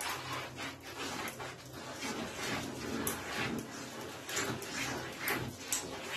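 Wooden spatula stirring flour into cake batter in a bowl: irregular scraping with soft knocks against the bowl.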